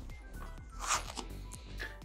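Soft background music with a steady beat, and a short rasp about a second in as an earpad is pulled from a Beyerdynamic DT990 Pro headphone.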